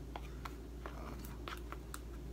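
Box-set pieces and still-packaged coasters being handled: a few faint scattered clicks and light rustling over a low steady hum.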